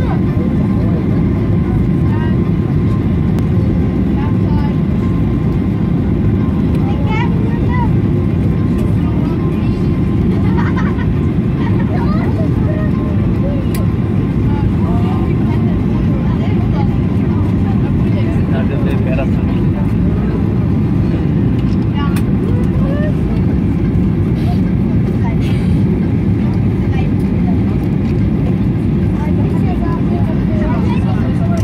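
Cabin noise of a jet airliner descending on approach, heard from a window seat: the engines and rushing air make a loud, steady low hum at an even level. Faint passenger voices talk underneath.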